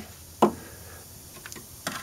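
One sharp click about half a second in, then two lighter clicks near the end, as the front control arm is worked up into its mounting on the subframe.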